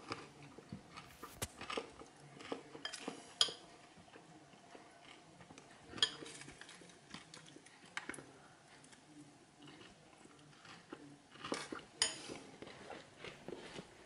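Metal spoon clinking and scraping irregularly against a glass bowl while eating oats soaked in milk and topped with popcorn, with a few sharper clinks and some chewing of the crunchy popcorn in between.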